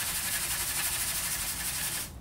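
Dry sand grains hissing and rattling across a wooden tray as the tray is shaken rapidly back and forth, in a steady high hiss that stops abruptly at the end. This is a simulated earthquake shaking a dry sand pile until its slope fails and spreads flat.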